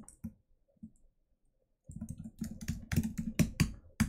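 Typing on a computer keyboard: a few scattered keystrokes, then a quick run of keystrokes from about halfway through.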